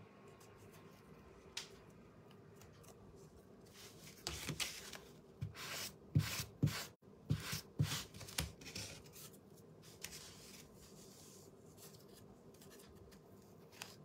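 Hands rubbing and pressing a tissue-covered wooden star ornament on a kraft-paper work surface. A cluster of short, irregular scrapes and rustles comes from about four to nine seconds in, between stretches of faint room tone.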